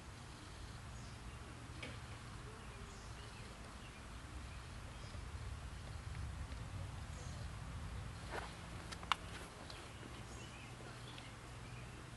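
Faint outdoor ambience: a steady low rumble with scattered faint chirps, and two sharp clicks about three-quarters of the way through, the second the loudest.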